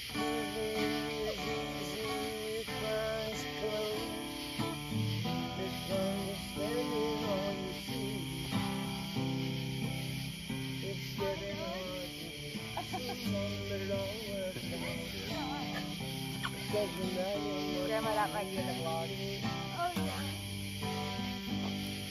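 Acoustic guitar strummed in chords, with a man singing along.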